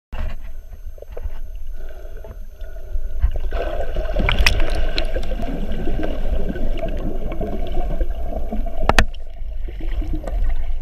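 Muffled underwater sound picked up through an action camera's waterproof housing: a steady low rumble of water moving past it, with a denser gurgling setting in about three and a half seconds in. Two sharp clicks are heard, about midway and near the end.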